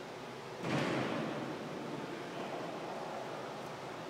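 Steady background hiss, with a brief louder rustling swell a little under a second in that fades away within about a second.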